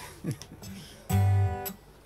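A single chord strummed on an acoustic guitar about a second in, ringing for about half a second before it is cut short.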